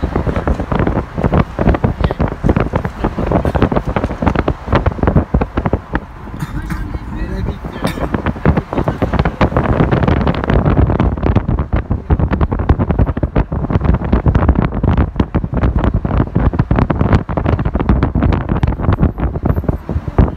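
Loud, uneven wind buffeting on the microphone of a camera held at the window of a moving car, over the car's road noise, easing briefly about six seconds in.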